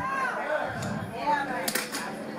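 Speech: voices talking, with one sharp click near the end.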